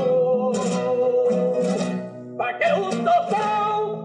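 Flamenco caña: male cante singing a long, wavering, ornamented line over Spanish guitar, with clusters of sharp percussive accents. About two and a half seconds in the guitar strikes anew and the voice moves up to higher notes.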